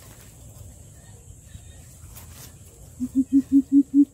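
Greater coucal giving its deep hooting call: a run of evenly spaced low hoots, about five a second, starting about three seconds in.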